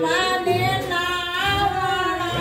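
Women's voices singing a devotional song, with no instruments clearly heard.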